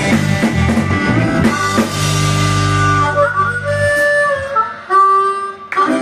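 Blues harmonica played through a vocal microphone over a live band of electric guitar, bass and drums. The full band plays for the first second and a half, then holds a long low note while the harmonica plays sustained notes, some of them bent.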